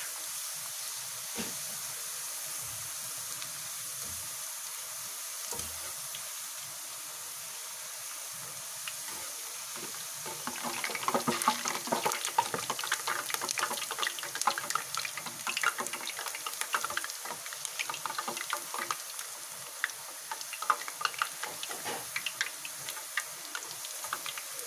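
Potato slices deep-frying in hot oil in a kadhai, sizzling steadily, with a couple of soft knocks early on and denser crackling and popping from about ten seconds in as they are turned with a wire strainer. The oil is still bubbling around the slices, which by the cook's rule means the potato is not yet cooked through.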